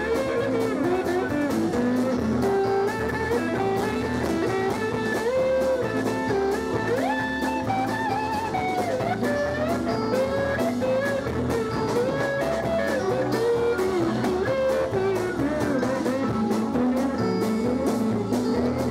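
Live blues band playing an instrumental passage: electric guitar lead with bending, gliding notes over electric bass, drum kit and rhythm guitar, with a steady beat.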